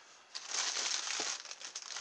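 Plastic wrapping on a pack of scourer pads crinkling as it is picked up and handled, starting about a third of a second in.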